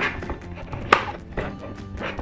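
A white cardboard box and its packaging being handled, giving a few short taps and knocks, the sharpest about a second in, over soft background music.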